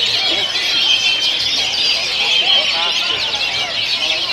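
Many caged oriental magpie-robins (kacer) singing at once in a contest, a dense, steady chorus of overlapping whistles and trills.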